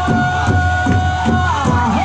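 Pow wow drum group singing over a big drum struck in a steady beat of about three strokes a second. A high sung note is held, then about one and a half seconds in the voices slide down in falling phrases.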